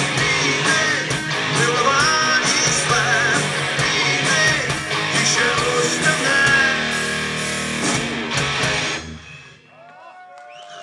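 Rock band playing live on electric guitars and bass. The song ends with a few last hits and the sound drops away about nine seconds in.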